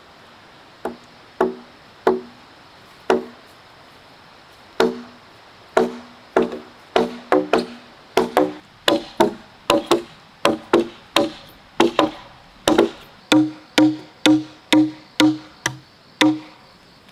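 Repeated chopping strikes of a blade into a wooden log, each blow giving a short hollow ring. The blows start sparse, speed up to about two a second, and near the end drop to a lower-pitched ring.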